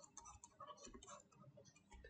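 Near silence with a scatter of faint, light ticks from a stylus touching a drawing tablet as lines are drawn.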